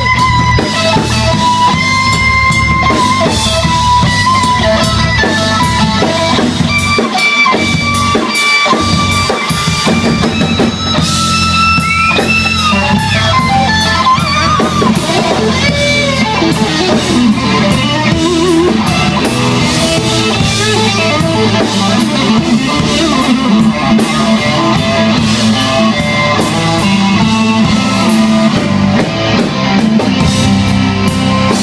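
A live blues band plays an instrumental passage. The lead electric guitar solos with held and bent notes over drums and bass guitar.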